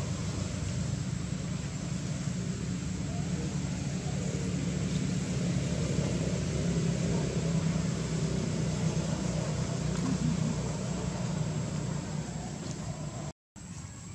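A steady low engine-like hum over a hiss of background noise, broken by a brief dropout to silence near the end.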